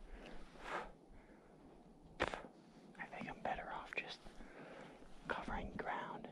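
A man whispering in short bursts, with one sharp click a little over two seconds in.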